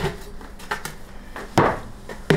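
Kitchen counter handling noises: a knock at the start, a few light clicks, then a louder knock about a second and a half in, as a toaster and a plastic food container are handled.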